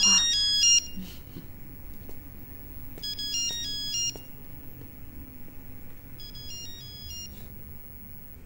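Mobile phone ringtone: a short, high electronic melody heard three times with pauses between, the last phrase fainter.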